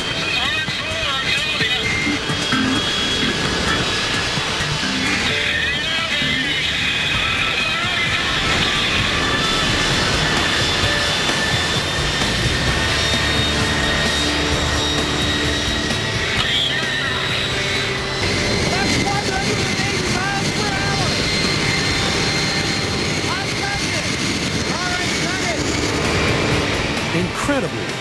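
Airliner's wing-mounted turbofan jet engine running at high power: a loud, steady roar with a high whine that creeps slightly upward. Its blast is being used to produce 180 mph winds.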